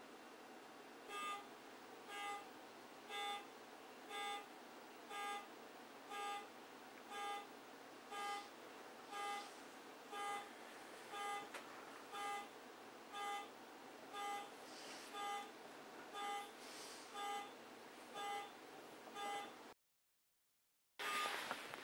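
A faint pitched alarm tone, beep or honk-like, repeating steadily about once a second, each one short, over a low steady hiss. It starts about a second in and cuts off abruptly just before the end.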